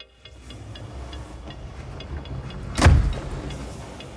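A whoosh transition sound effect: a rushing hiss that swells to a sharp peak about three seconds in, then fades, over faint ticking about four times a second.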